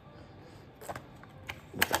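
A few light clicks and taps as a phone in its case is handled and set into a plastic bike phone mount case.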